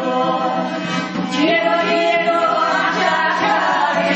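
A vocal ensemble of Kists from the Pankisi Gorge singing a folk song in several voices over a steady low held note.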